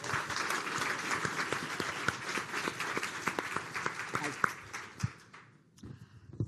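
Audience applauding, a dense patter of many hands clapping, fading out near the end.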